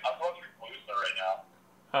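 Speech only: a man talking over a phone line, his voice thin, with a short pause near the end.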